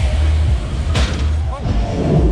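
Bass-heavy fairground ride music with a steady low thump, over crowd voices, and a short knock about a second in.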